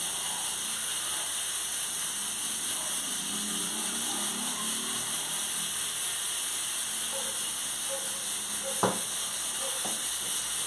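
Steady hiss of steam, as from a pressure cooker of beans on the stove, with one sharp tap near the end.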